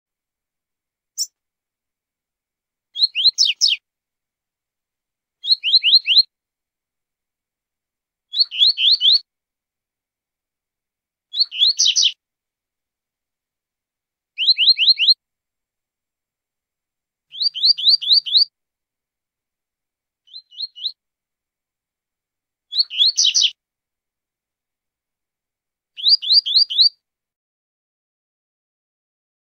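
A coleiro (double-collared seedeater) singing the 'tui-tui zel-zel' song: nine short phrases of three to five quick, high, down-slurred whistled notes, repeated about every three seconds. One phrase, about twenty seconds in, is shorter and fainter.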